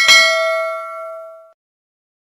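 Notification-bell sound effect: a bright metallic chime struck once, ringing out and dying away over about a second and a half.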